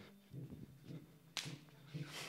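Faint footsteps of performers walking across a stage floor, with one sharp smack about one and a half seconds in.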